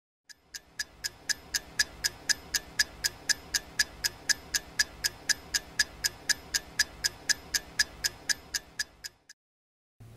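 Rapid ticking sound effect, about four ticks a second, over a faint low background drone; it cuts off suddenly near the end.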